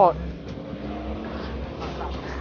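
A voice trails off at the very start, followed by a steady low rumble of background noise.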